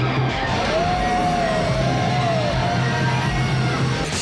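Rock music from a full band with guitar, with a long held, wavering note through the middle.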